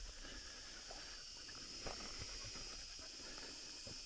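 Faint, steady high-pitched insect chorus in dry summer grassland, with a few soft footfalls on the dry ground.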